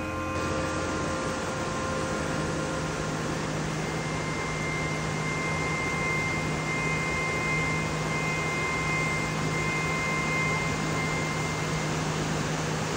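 Steady rush of a stream cascading down bare rock.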